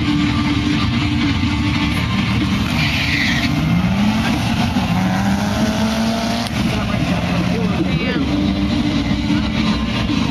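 Drag-race pass: a turbocharged four-cylinder Mitsubishi Lancer Evolution and the car in the other lane accelerating hard down the strip. The engine note rises and steps in pitch at each gear change, with a short hiss about three seconds in.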